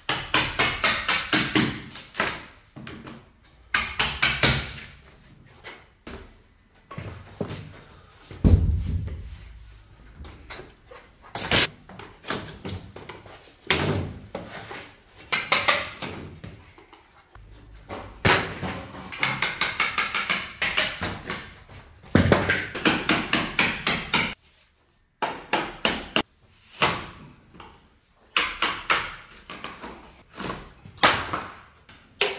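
A hammer striking a door frame in bursts of quick blows, knocking the trim loose to tear it out.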